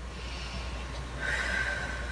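A woman breathing out on request for a chest-expansion check: a soft, breathy rush that swells about half a second in and lasts over a second.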